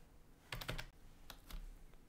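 Computer keyboard being typed on: a few separate, faint keystrokes spread over two seconds.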